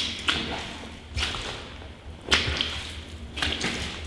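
Footsteps squelching through deep, soupy clay mud, a sharp wet smack each time a shoe lands or pulls free, about one step a second.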